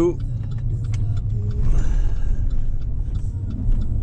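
Steady low engine and road rumble heard from inside a moving vehicle's cab, with a few faint clicks and a short hiss about two seconds in.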